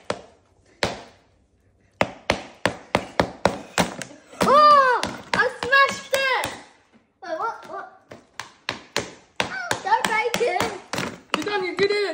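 Rapid sharp taps of a small mallet striking a hard chocolate smash-cake shell, in runs of about three to four a second. Children's voices rise excitedly twice, in the middle and near the end.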